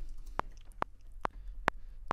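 Logic Pro metronome clicking at 140 beats per minute: five short, even ticks about 0.4 s apart.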